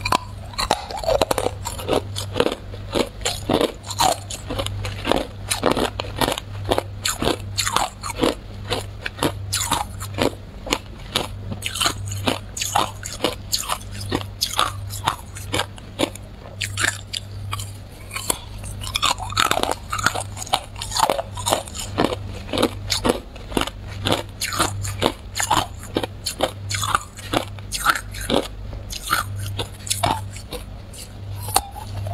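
Hard clear ice being bitten off a block and chewed, a close-up run of sharp, irregular crunches several times a second.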